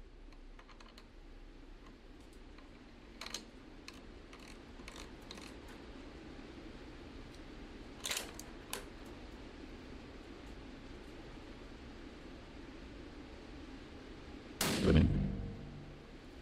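A 300 Blackout rifle fires one subsonic round through a small K-size suppressor about fourteen and a half seconds in: a single sudden suppressed shot that rings on for about a second in the indoor range. Before it come a few light clicks as the rifle is handled.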